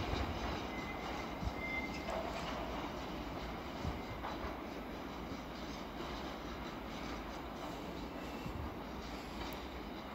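Freight train wagons rolling away over the rails, a steady rumble of wheels on track that slowly fades. A brief thin wheel squeal comes about a second or two in.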